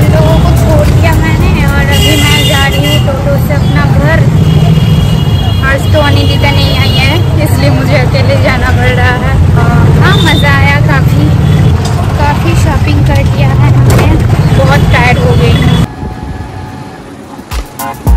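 Loud roadside street noise: a heavy low rumble with voices and music mixed in. It cuts off suddenly about two seconds before the end.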